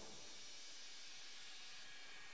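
Faint steady hiss in the silent gap between two songs of a forró album, after the previous track has faded out.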